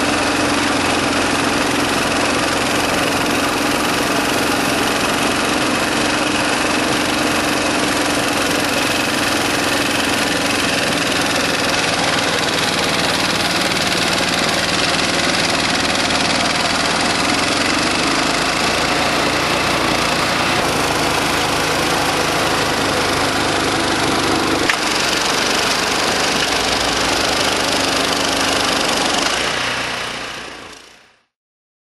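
Tracked snowblower with a four-stroke Mitsubishi engine running steadily under load while its auger and impeller throw snow out of the chute, a dense rushing noise over the engine note. The sound shifts slightly about 25 seconds in.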